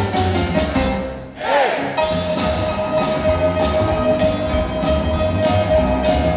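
Live boogie-woogie on grand piano with double bass and drum kit. The music breaks off briefly about a second in, then the band comes back in under a long held note.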